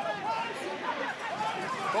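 Stadium crowd murmur with scattered voices calling out over it.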